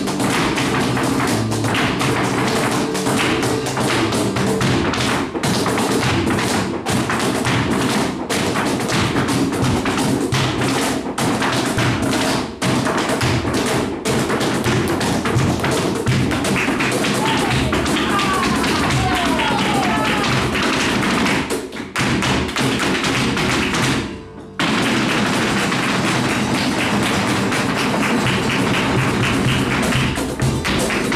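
Live flamenco: a dancer's rapid footwork taps (zapateado) and hand clapping (palmas) over guitar, dense and continuous. The sound breaks off briefly about 24 seconds in.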